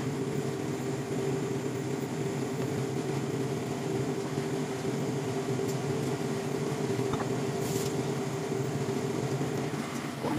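Steady hum of an induction cooktop and its cooling fan, under the bubbling of prawns simmering in sauce in a pan.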